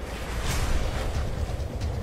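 V-22 Osprey tiltrotor hovering in helicopter mode: a steady deep rumble and rushing noise from its two proprotors and Rolls-Royce turboshaft engines.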